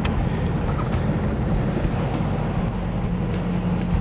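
Dodge Challenger's engine and road noise heard from inside the cabin while driving, a steady low drone.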